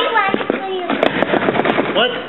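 A quick run of sharp clicks or knocks, about six in under a second, in the second half, after a child's voice.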